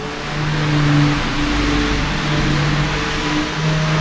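Steady outdoor background noise, an even hiss, with soft held low notes sounding under it.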